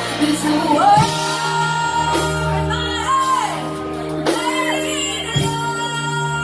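Live band performance: a woman singing lead into a microphone over electric guitar and drums. The sustained backing chords change about a second in and again near the end.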